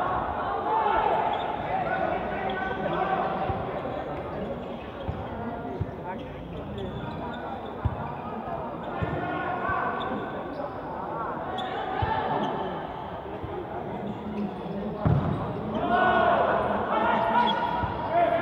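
A futsal ball being kicked and bouncing on an indoor sports court: scattered sharp thuds that echo in the hall, the loudest about fifteen seconds in. Voices calling out in the hall are heard throughout, stronger near the end.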